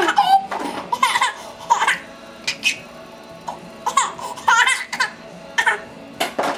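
A baby laughing in short high-pitched bursts, several peals spaced roughly a second apart.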